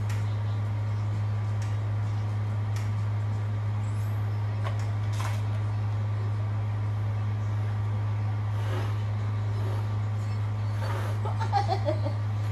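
A motor running with a steady low hum, with a few faint clicks and some brief louder sounds near the end.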